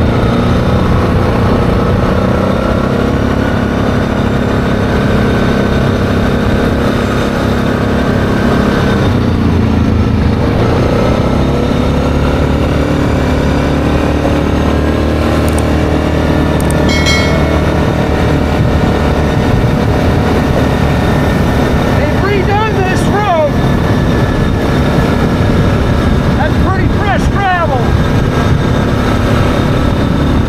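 ATV engine running steadily under way on a gravel road, its pitch dipping and shifting about ten seconds in. Two brief wavering high-pitched sounds come in over the engine later on.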